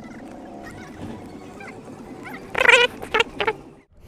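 Several loud, wavering bird calls in quick succession, starting about two and a half seconds in, over a faint steady background hum.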